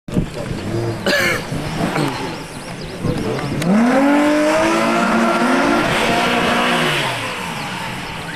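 Volkswagen Golf Mk II engine revving up sharply about three and a half seconds in and held at high revs with tyres spinning for a burnout, then dropping back near the end.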